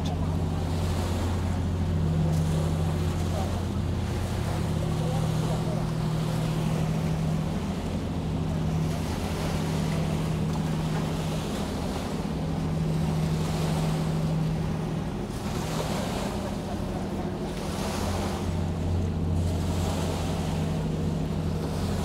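Steady low diesel drone of a harbour ferry passing close by, with waves washing on the shore in swells every few seconds.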